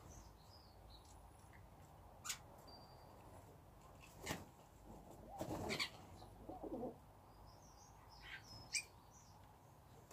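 Feral pigeons' wings flapping in short bursts as they land and take off, with three sharp knocks on the table. Small birds chirp briefly at the start and again near the end.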